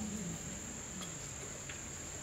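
A steady high-pitched whine holding one pitch over faint room noise.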